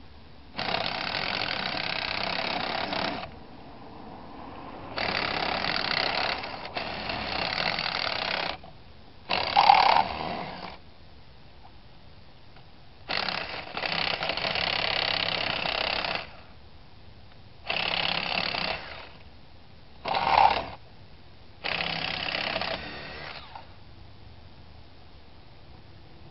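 Cordless drill boring a twist bit into a stripped wheel lug nut, run in seven bursts of one to three seconds with short pauses between. Two of the bursts, about ten seconds in and about twenty seconds in, are short and sharper, as the bit bites into the nut.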